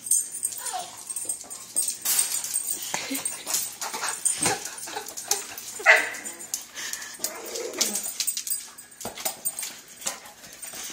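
Boxer dogs whining in several short pitched whines that bend up and down, over scuffling and sharp clicks of paws and a soccer ball on a tile floor.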